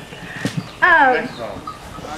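A person's voice letting out a high, falling cry about a second in, amid softer bits of voice.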